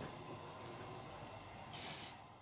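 Short hiss of an ethyl chloride aerosol spray, near the end, as the cold spray is released to chill the test pellet for thermal testing of the teeth.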